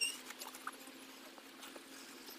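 Bicycle brake giving one short, high squeal as the rider stops hard at the top of a gravel mound. Scattered light clicks and crunches of gravel and the bike's parts follow, over a faint steady low hum.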